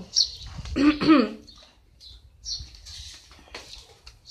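A brief wordless voice sound about a second in, with a few short high bird chirps around it.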